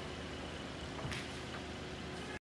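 Mercedes-AMG E53's turbocharged 3.0-litre inline-six idling steadily and quietly, with a brief faint knock about a second in.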